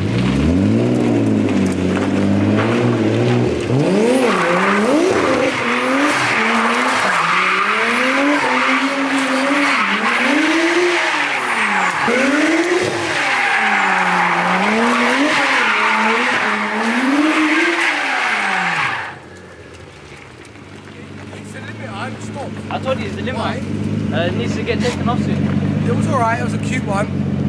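Nissan R34 Skyline Tommy Kaira engine revving up and down again and again while drifting, with tyres squealing from about four seconds in. About three-quarters of the way through the squeal and revving cut off suddenly, and the engine runs at a steady idle.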